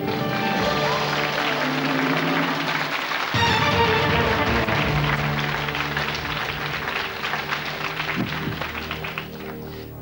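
Game-show correct-answer music cue playing over studio audience applause; a deeper bass layer enters about three seconds in, and the sound fades toward the end.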